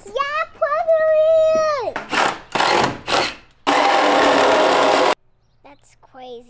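A child's voice holds a long, high "aaah". Then comes a harsh, even burst of cordless power-tool noise for about a second and a half, starting about four seconds in and cutting off suddenly.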